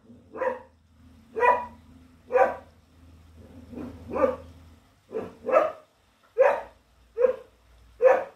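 English Setter barking repeatedly at an intruder she is standing her ground against, about nine short barks roughly a second apart, some coming in quick pairs.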